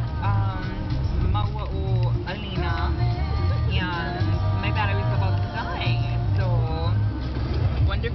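Music with singing and a bass line that steps between low notes, playing on a car stereo inside a moving car over the low rumble of the road.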